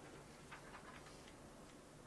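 Near silence: room tone, with a few faint clicks.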